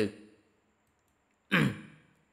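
A man's short, audible sigh about one and a half seconds in: a breathy exhalation whose voice falls in pitch and fades within about half a second.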